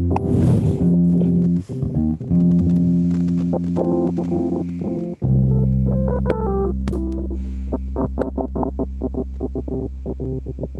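Instrumental music with sustained keyboard chords over a bass line. About five seconds in it drops to a held low bass note under short repeated chord stabs, about three to four a second.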